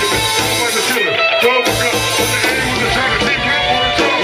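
Live hip-hop band playing loud through a PA, with electric guitar and bass driving a full band mix.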